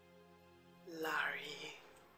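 Soft background film music, with a woman's brief breathy, whispered utterance about a second in.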